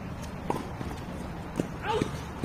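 Tennis ball knocks on an outdoor hard court: two short, distant knocks of the ball bouncing and being struck, then a brief pitched, bending sound near the end.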